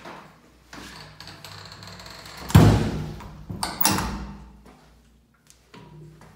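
A toilet stall door banging, with one loud knock about two and a half seconds in and two more knocks about a second later, fading away after each.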